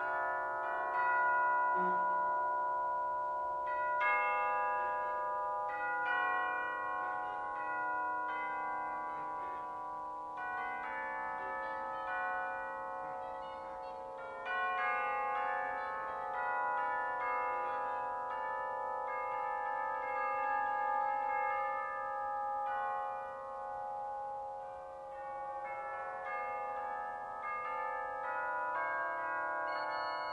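Pipe organ and percussion playing a contemporary concert piece: layered organ tones held and slowly shifting, with new struck notes entering every few seconds.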